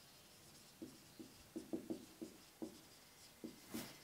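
Marker pen writing on a whiteboard: a run of short, quiet strokes as a word is written. One brief louder sound comes near the end.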